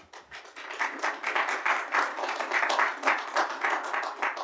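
Applause: a roomful of people clapping, building up over the first second and easing off near the end.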